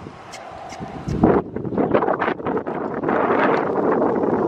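Wind buffeting the microphone, getting much louder about a second in, as a horse trots past close by with a quick, soft beat of hooves on the sand.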